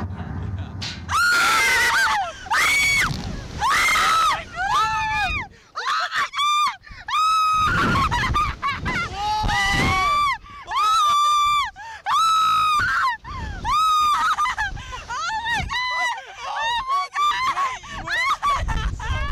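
Riders screaming on a reverse-bungee slingshot ride in flight: a long run of high-pitched screams, each about a second long, one after another, mixed with shrieks of laughter.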